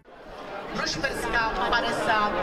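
Crowd of people chattering, fading in from near silence within the first half second.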